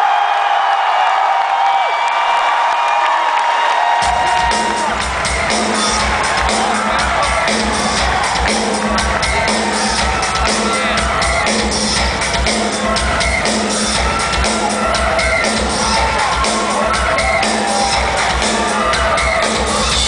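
Concert crowd cheering and whooping, then about four seconds in a live industrial rock band's music starts with a heavy, steady electronic drum beat, the crowd still cheering over it.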